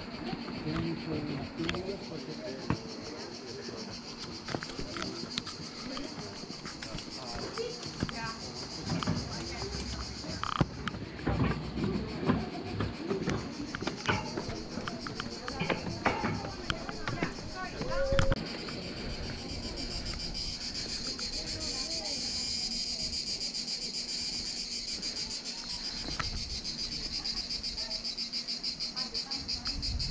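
Cicadas buzzing steadily in the trees, a high pulsing drone that grows stronger in the second half. Distant voices are heard under it in the first half, and there are a few sharp knocks, the loudest about two-thirds of the way through.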